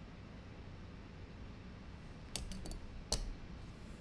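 A few small, sharp clicks, like taps or key presses, about two and a half seconds in, then one louder click, over faint room tone.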